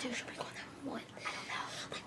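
Hushed whispered speech in a small room, in short breathy phrases.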